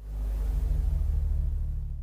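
Low, steady rumbling drone with a faint hiss, starting suddenly and fading out near the end: a horror-style transition sound effect.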